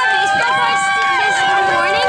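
A group of children yelling and calling out over one another, with some calls held long and steady.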